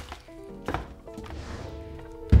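Soft background music with steady held notes, and two light taps about a second apart.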